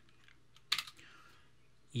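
A short cluster of computer keyboard keystrokes about three-quarters of a second in, as a code cell is run in a notebook.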